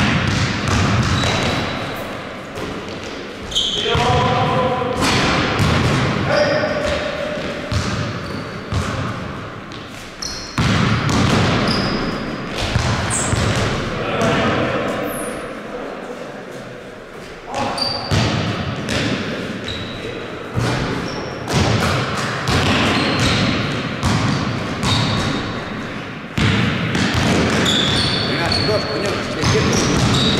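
A basketball being dribbled and bounced on a gym's hard floor, many sharp thuds, with short high sneaker squeaks and players' brief shouts echoing in the large hall.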